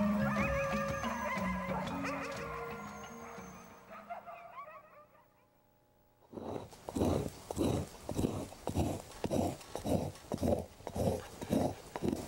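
Background music fading out over the first few seconds to near silence. Then, about six seconds in, a hand scraper is drawn across an animal hide in regular strokes, about two a second.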